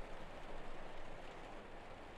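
Faint, steady rain ambience: an even hiss of rainfall with no distinct drops or events.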